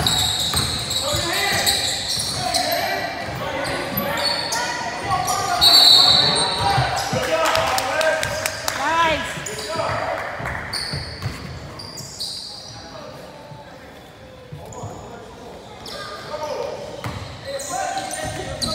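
Basketball game in a gym: a ball bouncing on the hardwood court amid spectators' and players' voices, echoing in the large hall. It grows quieter in the second half.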